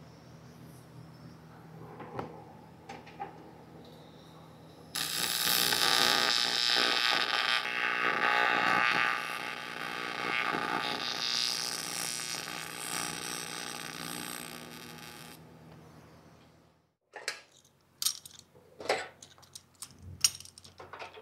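TIG welding arc struck about five seconds in: a loud, steady buzzing hiss that tapers off gradually over several seconds and then dies away, the current eased down slowly to keep the end crater small. Before it there is only a faint low hum with a few light clicks.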